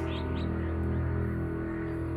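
Drama background score: steady, sustained chords held without a break, with a few faint high bird chirps over them.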